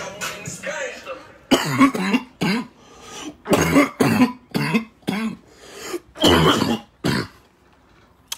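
A man coughing hard in a string of separate coughs that goes on for about six seconds: a coughing fit after drawing on smoke.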